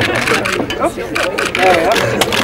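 Speech: several people talking over one another, with one voice saying "oh".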